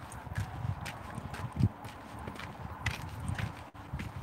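Footsteps on a dirt farm track, an irregular run of low thuds and small crunches as the person walks.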